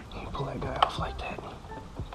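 A plastic push-in fairing clip being pinched and worked free on a motorcycle: soft handling and rustling with small ticks, and one sharp click a little before the middle as it lets go.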